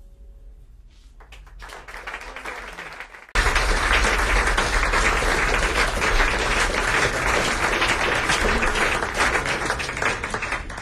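Audience applause at the end of a tune. Scattered claps build over the first few seconds, then the applause jumps abruptly to full volume about three seconds in and stays loud.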